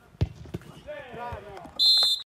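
A football kicked hard with a sharp thud about a quarter second in and a lighter touch just after, players shouting, then near the end a loud, steady referee's whistle blast.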